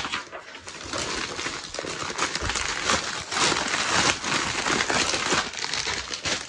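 Thin plastic mailing bag crinkling and rustling in an irregular, continuous run as it is torn open by hand and a packaged duvet cover set and a paper sheet are pulled out of it.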